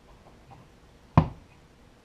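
A single sharp knock about a second in, as a plastic tub of salt brine is set down on a cutting board.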